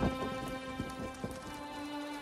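Sustained background music chord, with a scatter of low rumbling knocks that dies away in the first second and a half: a rain-and-thunder sound effect. The chord moves to a new low note about a second and a half in.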